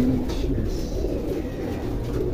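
Many domestic racing pigeons cooing at once, a steady low chorus of overlapping coos.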